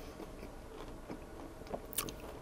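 Close-miked mouth sounds of someone chewing a bite of a crumb-coated corn dog: faint, soft chewing with small wet clicks, and a sharper click just before the end.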